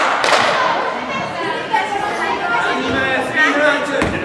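Overlapping voices calling and chattering in a large sports hall, with a thud just after the start.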